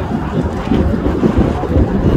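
Wind buffeting the microphone: irregular low rumbling gusts.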